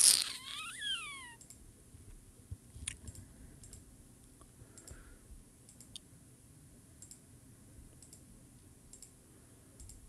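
Faint computer mouse clicks, single clicks scattered a second or more apart, over a low room hum.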